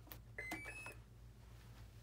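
A click as the flight battery connector is plugged in, then three short beeps rising in pitch: the electric jet's speed controller playing its power-up tones through the motor.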